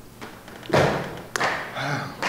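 A sudden heavy thump just under a second in, then a sharp tap about half a second later, with a brief vocal sound near the end.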